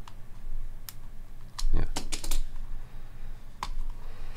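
Trading cards and hard plastic card holders being handled on a table: a few sharp plastic clicks and taps, with a cluster of them and a dull knock about two seconds in.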